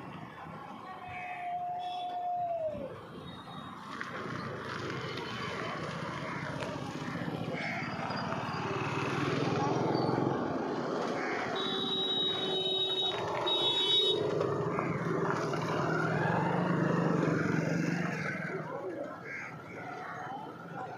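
Street sound: people's voices mixed with motorcycle engines, growing louder through the middle. About two seconds in, a short held tone drops off in pitch.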